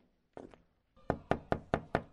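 Knocking on a door: a faint double tap, then five louder knocks in quick succession about a second in.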